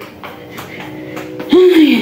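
A lull with a faint, steady low hum under the room's background, then a woman starts talking about a second and a half in.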